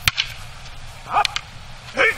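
Wooden jo staff and wooden sword striking together with a sharp clack, and a second clack just after. About a second in comes a short kiai shout followed by two quick clacks, and another shout at the end.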